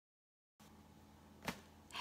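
Faint room tone with a low steady hum after a half-second of dead silence, broken by one sharp click about one and a half seconds in.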